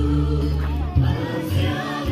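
Group of voices singing together over loud amplified music with a deep bass line, its bass notes changing about once a second.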